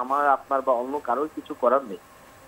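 Only speech: a caller talking over a telephone line, with the thin, narrow sound of a phone call.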